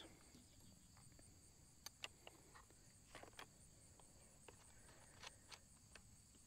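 Near silence: a faint steady high insect trill with a few faint scattered clicks.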